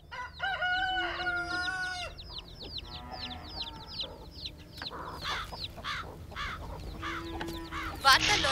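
A rooster crows once, a long held call near the start. Chickens then cluck, with a run of many short, falling high chirps.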